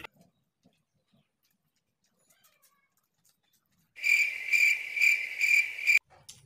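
Near silence, then about four seconds in a high-pitched steady chirping starts, pulsing about two to three times a second.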